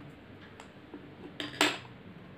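Two short hard clicks close together near the end, the second louder: a pencil being set down and a plastic sketch pen picked up from among the other pens on a table.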